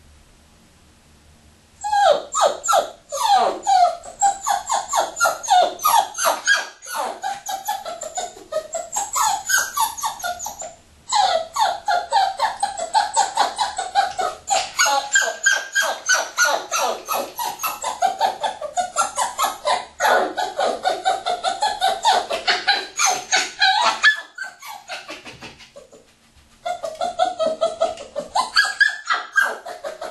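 A Parson Russell terrier puppy giving a long run of rapid, high-pitched yips and whines, the calls sliding up and down in pitch. They start about two seconds in, break off briefly near the end, then start again.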